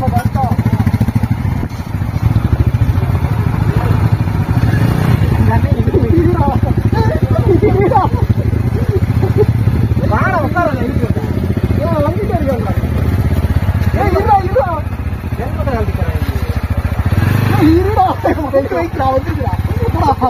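Motorcycle engines running steadily at low revs while the bikes are taken slowly up a steep, rutted dirt trail. Men's voices call out over the engines several times.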